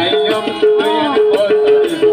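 Live band playing an instrumental passage of a Chittagonian folk song: a keyboard melody of short repeated held notes over tabla and hand-percussion rhythm.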